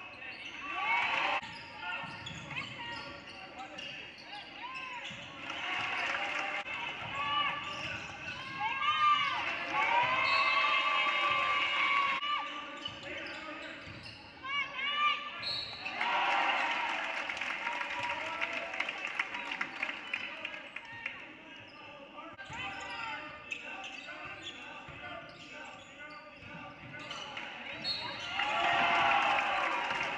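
Basketball game sounds on a hardwood gym floor: a basketball bouncing, shoes squeaking in short rising and falling chirps, and voices calling out.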